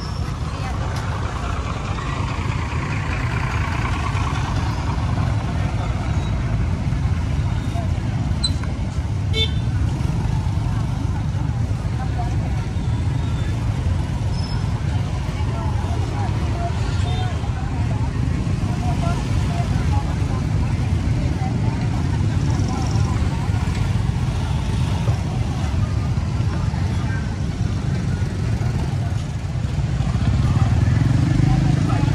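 Busy roadside street-market ambience: a steady low rumble of motorbikes and traffic, with people talking nearby.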